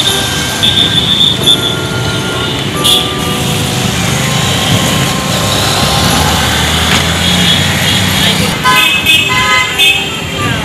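Busy street traffic: engines of motorcycles and auto-rickshaws running, with vehicle horns honking repeatedly, several held honks early on and a quick string of short toots near the end.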